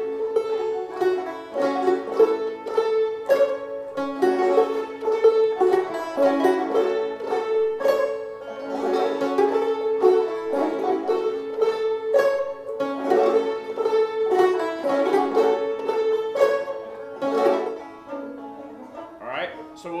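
Several five-string banjos played together in Round Peak fingerpicking style, a steady run of plucked notes over a ringing drone string. The playing thins out and stops near the end.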